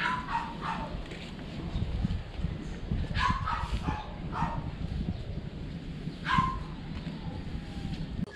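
A dog barking in short, high yips, a few at a time: a group right at the start, a cluster about three to four and a half seconds in, and one more about six seconds in.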